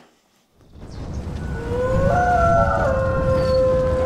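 Sound design for an animated logo outro: a low rumble swells up from near silence, and then several synthetic tones glide upward and settle into a held chord.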